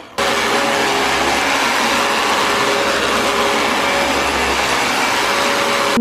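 Dyson upright vacuum cleaner running steadily over carpet: a loud, even rush of suction noise with a faint steady hum. It cuts in suddenly just after the start.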